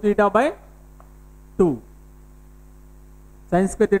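Steady electrical mains hum running under the recording, heard plainly in the pauses between a man's short spoken phrases at the start, once briefly in the middle and again near the end.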